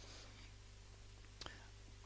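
Near silence: room tone with a steady faint hum, and one faint click about one and a half seconds in.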